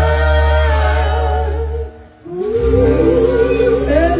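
Live rock band with a female singer holding a long sustained chord that cuts off just under two seconds in. After about half a second's gap, a held sung note with wide vibrato comes in over a steady low bass note, typical of a song's drawn-out ending.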